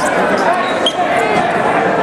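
Rubber dodgeballs bouncing on a gymnasium's hardwood floor amid players' voices calling and chattering across the gym.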